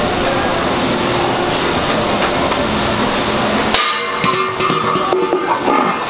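A steady din with music, which gives way about four seconds in to a run of sharp knocks and clatter.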